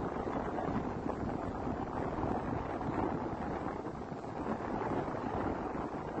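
Steady rushing noise, strongest in the low end, like wind on the microphone.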